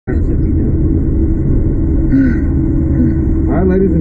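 Steady low machine rumble with a constant hum from a reverse-bungee slingshot ride as the seat capsule is held before launch. A man's voice starts speaking near the end.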